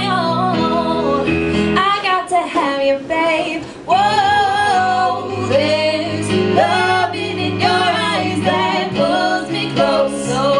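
Live pop vocals, mainly a woman's voice with sliding runs, over electric keyboard chords. The voice drops back briefly about three seconds in, then comes back in louder at about four seconds.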